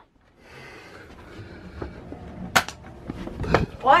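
A Nerf dart blaster firing with a sharp snap about two and a half seconds in, then a duller thump a second later, over rumble from the camera being handled.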